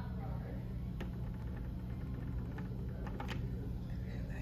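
A steady low hum, with a few faint sharp clicks, about one a second in and another near the end.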